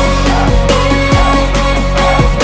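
Pop song's electronic backing track: deep kick-bass notes that drop in pitch, about two a second, over sustained synth tones and light percussion.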